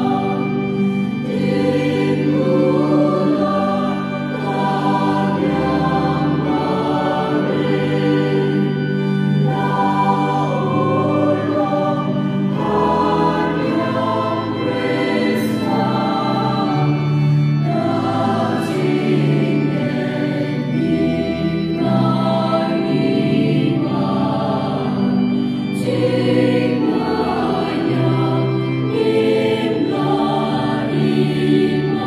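Mixed church choir, women's and men's voices together, singing a hymn continuously into microphones.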